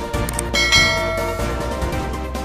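Background music with a bright bell chime sound effect struck about half a second in and ringing for about a second, the cue for a notification-bell icon in a subscribe animation.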